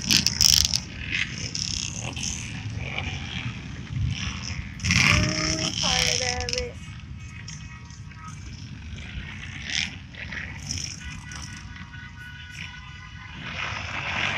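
Pickup trucks driving past on a road, with steady engine and tyre noise. A brief louder tone sounds about five seconds in.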